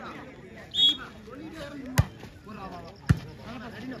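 A short, high whistle blast about a second in, then a volleyball struck hard twice: the serve about two seconds in and a return hit about a second later.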